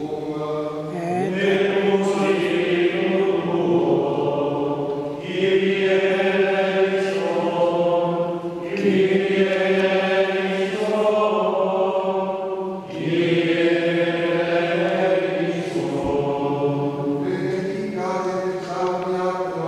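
Ambrosian plainchant sung by men's voices together on a single melodic line, in long held phrases of about four seconds each with short breaths between.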